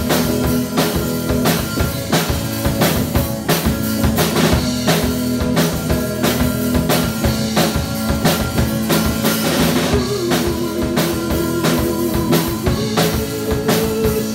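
Live rock band of electric guitar and drum kit playing an instrumental passage: strummed electric guitar chords over a steady drum beat. The guitar moves to a new chord about ten seconds in.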